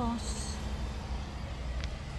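Steady low rumble inside a car's cabin, with a brief rustle near the start as the phone filming is handled.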